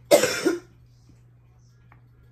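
A woman with laryngitis coughing: one short double cough, about half a second long, right at the start.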